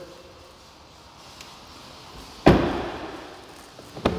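The rear door of a Ford F-250 crew cab truck shut once about halfway through: a single heavy slam that fades out over about a second.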